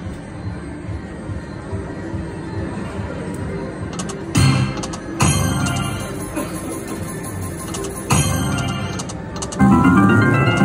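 Lotus Land Tigers slot machine playing its free-games bonus music as the reels spin, with sudden louder sound effects breaking in about four times in the second half.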